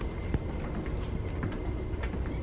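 Footsteps on a metal walkway, with a sharp knock about a third of a second in, over a steady low rumble and a faint high-pitched machine whir.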